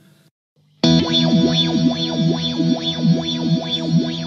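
Electric guitar through a reverb pedal set to infinite sustain, its reverb knob turned past three o'clock, so the chord is frozen into a steady ambient pad that goes on forever. Sweeping tones rise and fall over the pad, which comes in suddenly about a second in after near silence.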